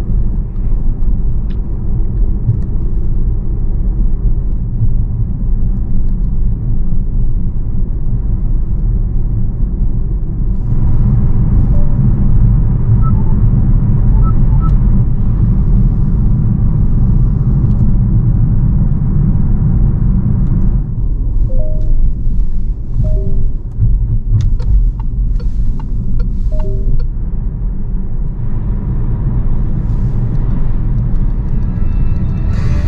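Inside the cabin of a Peugeot 508 SW PSE plug-in hybrid on the move: a steady low road and tyre rumble. About ten seconds in, a brighter hiss joins for some ten seconds while the windscreen washer sprays and the wipers sweep. A few faint short tones and clicks follow later.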